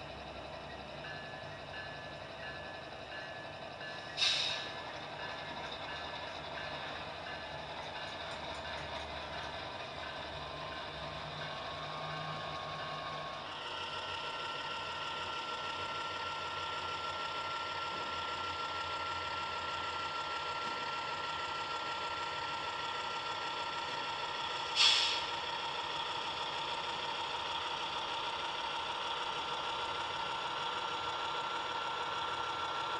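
Atlas Dash 8-40CW model locomotive running along the track on its newly fitted motor, being run in to bed the brushes: a steady motor and gear whine with wheel noise. The whine steps up and brightens about halfway through, and two short sharp sounds come, one about four seconds in and one near the end.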